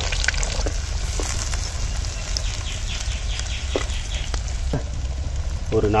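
Chopped shallots frying in hot oil in a clay pot over a wood fire: a steady sizzle with scattered small pops.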